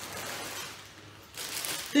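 Plastic zip-lock bag rustling as it is picked up and handled, starting faintly and turning into a louder, crisper crinkle a little over a second in.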